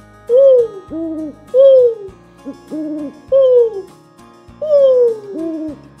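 People imitating owl hoots, taking turns: a loud falling 'hoo' answered by a shorter, level 'hoo', about four times over.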